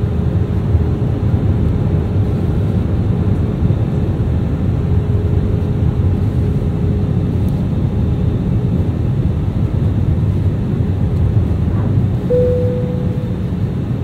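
Airbus A320 cabin noise on final approach: the steady low rumble of the wing engines and airflow as heard from a window seat. A faint steady whine runs through the first half, and a short higher tone sounds near the end.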